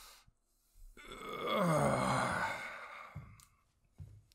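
A man's long, breathy groan, falling in pitch, the sound of someone stirring awake after being knocked out. A few faint clicks follow near the end.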